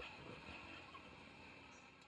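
Faint street ambience with light traffic noise, fading away near the end.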